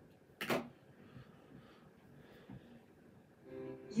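A single short knock about half a second in, then a quiet room. Near the end, music starts playing from the television's speaker as a children's video begins.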